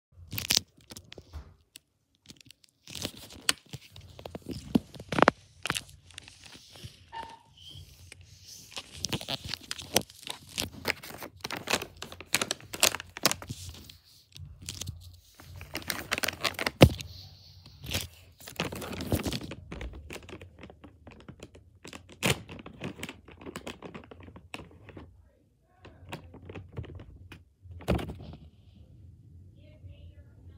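Plastic snack pouch of Feastables MrBeast Cookies being handled and torn open, with lots of sharp crinkling and crackling and a few knocks, on and off throughout.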